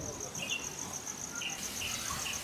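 Insects chirping: a steady high-pitched pulsing trill, about five pulses a second, with a few short chirps scattered over it.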